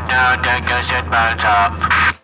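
A pilot's announcement over an airliner's cabin PA, the voice thin and muffled, heard over the steady low drone of the cabin.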